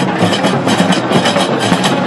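Moroccan Gnawa troupe playing qraqeb (iron castanets) in a fast, steady clacking rhythm over large double-headed tbel drums.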